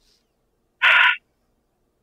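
A single short, breathy vocal sound from a person about a second in, with near silence around it.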